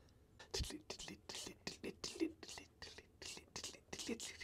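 Quiet whispering from a man: a quick run of short, breathy syllables that starts about half a second in.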